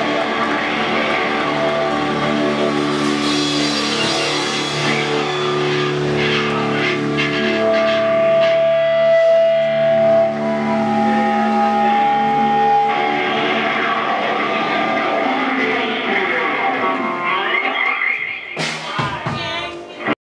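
Live rock band of electric guitars, bass, drums and keyboard playing sustained chords, with long held notes ringing through the middle. The music breaks off and drops away near the end.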